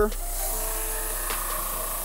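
Small electric ball-brushing machine running steadily, its spinning brush wheel scrubbing against the leather of a football to brush off the shaving-cream conditioner.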